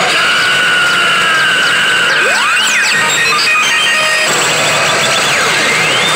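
Warau Salesman 3 pachislot machine playing its bonus-zone music and electronic effects: a long held tone that sags slightly, rising sweeps, and quick runs of short beeps in the middle and again near the end.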